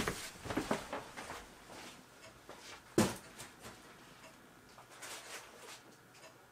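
Someone rummaging at a wall shelf or cupboard: a cluster of small clicks and knocks, one sharp knock about three seconds in, then fainter scattered clicks.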